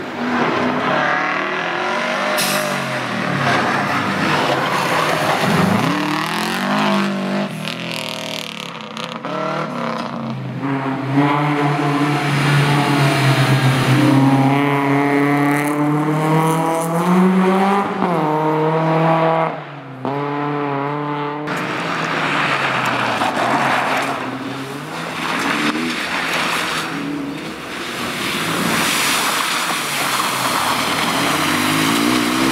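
Rally cars passing one after another at full throttle: a Subaru Impreza, a BMW 3 Series coupe and a Toyota GR Yaris. Each engine revs up and drops back repeatedly through gear changes.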